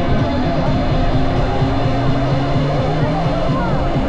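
Steady rumble of heavy rain and wind on the microphone, with a crowd's chatter underneath.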